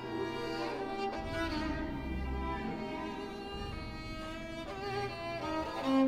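Solo violin playing a contemporary violin concerto with an orchestra: held and gliding violin notes over sustained low strings.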